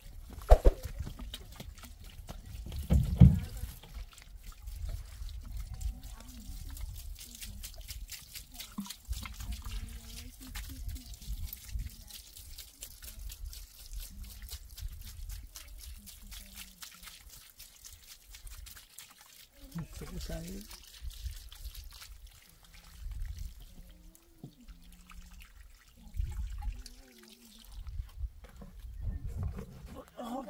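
Water trickling from the spout of a plastic watering can and splashing onto stone and gravel, with brief voices in between.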